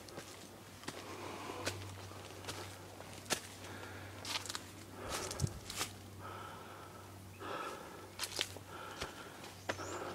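Footsteps on a dirt-and-stone forest trail: irregular sharp scuffs and crunches of a walker climbing, with the hiker's breathing between them.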